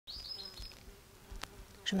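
A flying insect buzzing quietly, with a high wavering whine in the first second and a single sharp click about one and a half seconds in.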